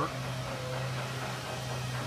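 Steady low hum with an even background noise of a large factory hall, with no distinct events.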